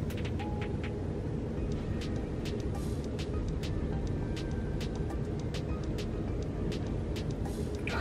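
A steady low rumble throughout, with many faint, short clicks and ticks scattered over it.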